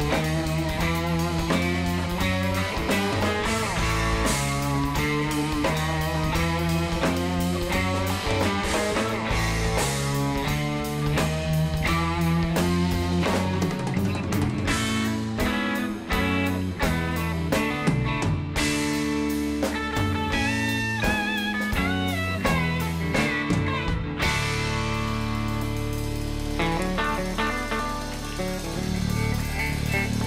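Live instrumental band music: an electric guitar plays a busy line of picked notes over a drum kit, and the music thins out about three-quarters of the way through.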